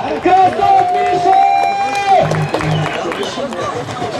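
Contest announcer shouting, holding one long drawn-out call for about a second and a half, over crowd noise.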